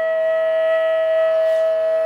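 Flute holding one long, steady note, the closing note of the background flute music.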